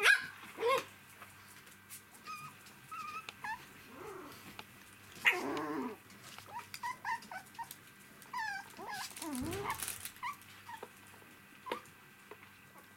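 Three-week-old poodle puppies yipping, whimpering and squeaking with short growls as they play, many small calls overlapping, with louder yelps right at the start, about five seconds in and just before ten seconds.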